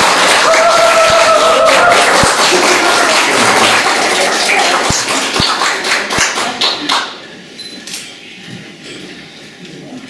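Audience applauding, with a voice laughing briefly near the start. The clapping stops about seven seconds in.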